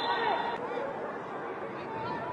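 Football match ambience in a stadium: a steady murmur of distant voices and shouts from the pitch and stands, with no commentary over it.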